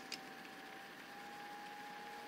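Quiet room tone with a faint steady hum, broken just after the start by one small click as a digital caliper's jaws close on a thin stainless steel blade.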